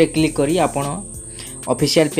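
A man narrating in Odia, with a thin, steady high-pitched tone under his voice.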